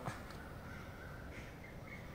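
Faint outdoor background with a distant bird calling, a faint call about halfway through.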